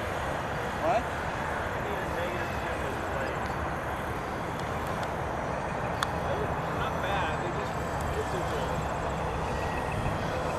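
Radio-controlled model autogyro flying overhead, its small engine and spinning rotor a steady distant drone.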